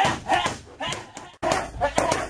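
Boxing gloves smacking hand-held focus pads during pad work, about six sharp hits in quick succession.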